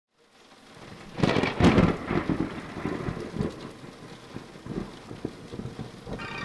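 Thunderstorm with rain, fading in from silence: a loud crackling thunderclap about a second in, then its deep rumble dying away.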